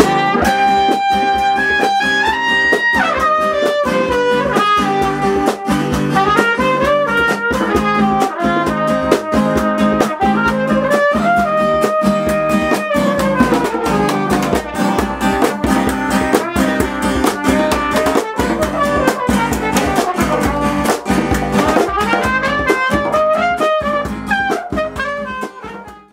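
A recorder playing a melody over a strummed acoustic guitar and drums, the tune stepping up and down in short held notes; the music fades out at the very end.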